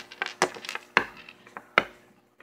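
Three sharp knocks of a hand and small toys against a wooden tabletop.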